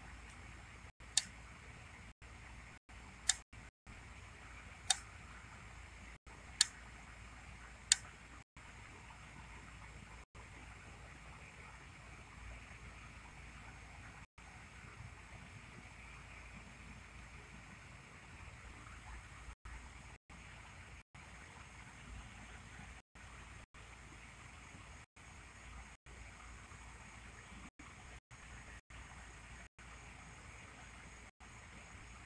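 Faint steady background noise, with five sharp clicks spaced over the first eight seconds and repeated brief dropouts to silence.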